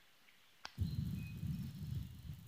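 Dead silence, then a sharp click about two-thirds of a second in as the recording resumes, followed by a low, steady rumble of wind on the microphone.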